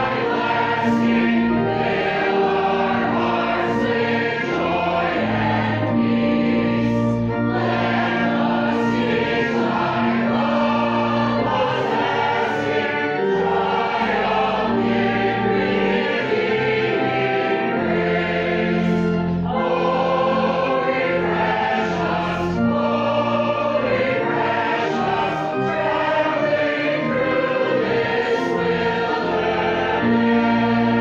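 A congregation singing a hymn together over an accompaniment of long held notes.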